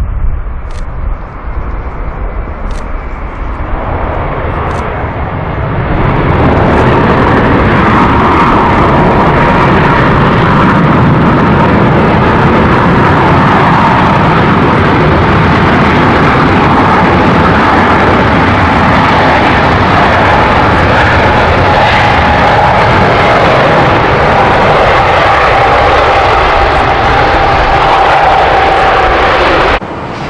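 Airbus A380-800 jet engines on the landing rollout: a wide roar that swells to a loud steady level about five seconds in, with a high engine whine sliding slowly lower in pitch. The sound breaks off suddenly near the end.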